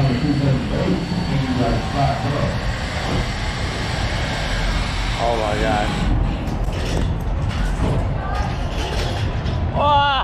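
Steady rushing noise with a low rumble on a harness-mounted action camera at a zipline launch. In the later part of the stretch the zipline trolley sets off and runs along its steel cable, with wind over the camera. Short bursts of voices sound near the start and about halfway.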